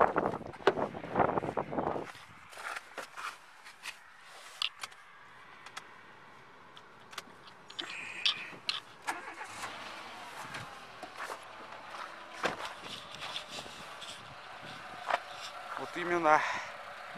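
Handling noises around a Renault Logan sedan: scattered clicks and knocks of the driver's door being worked. About halfway through, the ignition key is turned and the engine starts, then runs with a low steady idle.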